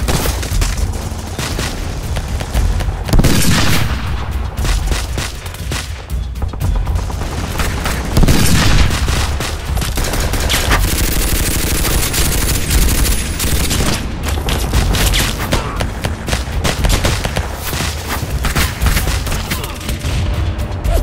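Battle sound of dense gunfire, rifle shots and rapid automatic bursts overlapping without a break, with two louder explosions about three and eight seconds in.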